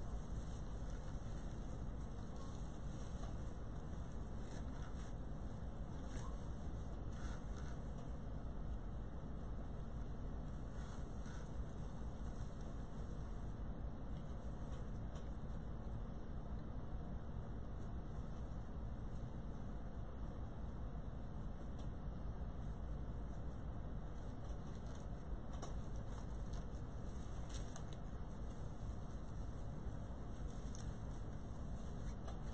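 Steady low room hum with a few faint rustles and crinkles of ribbon and deco mesh being handled.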